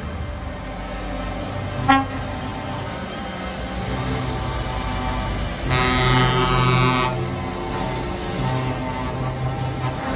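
Heavy trucks running past on the road, with a truck air horn sounded once for about a second and a half near the middle. A short sharp click comes just before two seconds in.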